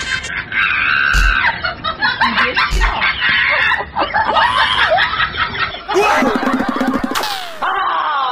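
Laughter and high-pitched voice sounds, with a brief noisy sweep near the end.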